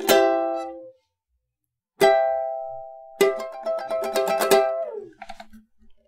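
Ukulele chords strummed. The first is cut short, a second rings out about two seconds in, then a quick run of strums and notes ends in a slide down the neck shortly before the end.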